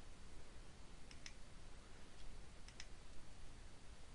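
Faint computer mouse clicks: two pairs of quick clicks about a second and a half apart, as radio-button options are selected on a web search form.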